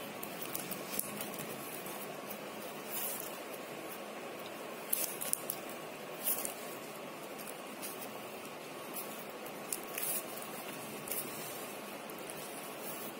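Plastic craft-wire strands rustling and clicking against each other as hands pull a woven piece tight: a few scattered clicks over a steady hiss.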